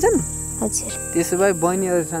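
A voice singing short held, wavering phrases of a Nepali folk melody, over a steady high insect drone like crickets.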